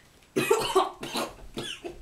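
A boy coughing several times in quick succession.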